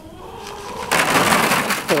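Grain poured from a container into a plastic feed trough: a dry rattling rush that swells in and runs loud for about a second in the second half.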